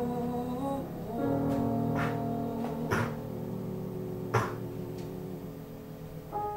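Grand piano playing the closing bars of a musical-theatre ballad alone, sustained chords with a new chord about a second in. A few short sharp clicks cut across it, the loudest a little past four seconds.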